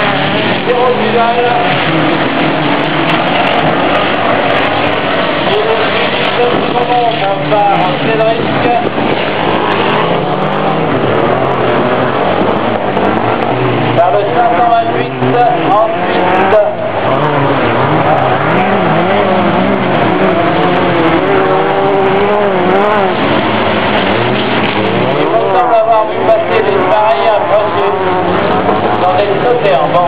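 Engines of several dirt-track race cars running hard, their pitch rising and falling as the drivers accelerate and lift.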